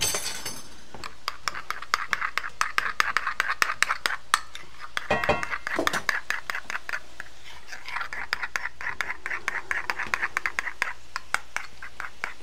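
Food frying in pans on a stovetop: a mushroom pan sauce and asparagus in broth sizzling, with dense crackling pops, and a short clink about five seconds in.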